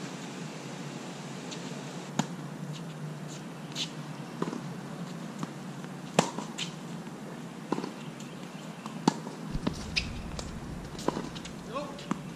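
Tennis balls struck by rackets and bouncing on a hard court during a rally: sharp pops every second or two, the loudest a close forehand about six seconds in.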